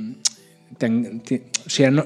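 Speech only: a man speaking Spanish in conversation, with a short pause and a small mouth click before he goes on talking about a second in.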